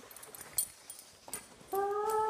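A dog whining: a steady, level-pitched whine begins near the end, after a quiet stretch with a couple of soft clicks.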